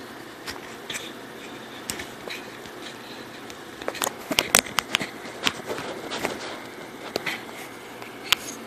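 Close handling noise from hands working right by the microphone: scattered light clicks and taps, most of them bunched together between about four and six and a half seconds in.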